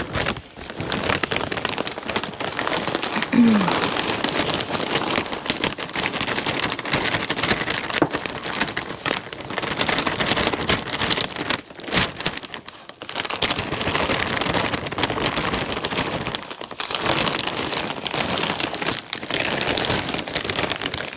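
Dry potting mix pouring out of a plastic bag into a plastic potting tray, a continuous rain-like pattering with the bag crinkling. It comes in several long pours, breaking off briefly three times.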